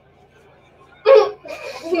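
A woman bursting into laughter: a sudden sharp laugh about a second in, followed by breathy laughing.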